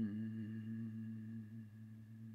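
A man's voice holding one long, steady hesitation sound, a drawn-out "uhhh" at a low, even pitch, fading slowly.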